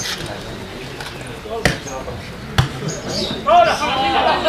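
Two sharp thuds of a football being played on a grass pitch, about a second apart, the second louder. Men shout on the pitch near the end.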